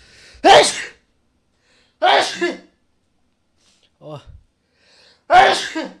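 A young man sneezing three times in a row, about two seconds apart, loud and sharp, with a short voiced sound just before the third sneeze.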